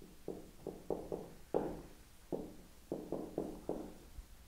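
Dry-erase marker writing on a whiteboard: about ten short, irregular knocks as the marker tip strikes the board with each stroke.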